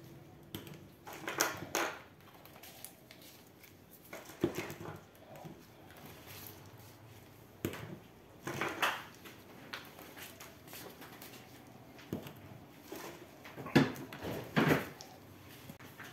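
Plastic caps being fitted onto small spice shaker bottles by gloved hands, with rustling from the plastic bag of caps: a handful of short clicks and rustles spread out, with quiet between.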